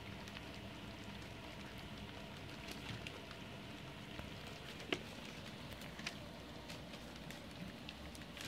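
A litter of Goldendoodle puppies lapping and smacking at soft, blended puppy food in a shared pan: a steady crackle of many small wet clicks, with one sharper click about five seconds in.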